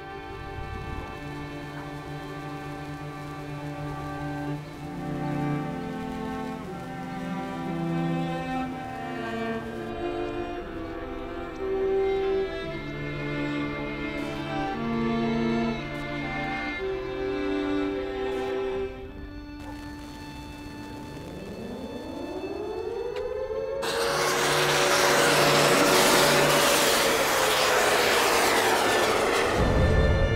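Film score of bowed strings playing slow, sustained chords. About twenty seconds in, rising pitch sweeps build into a loud, dense rushing sound that fills the last several seconds.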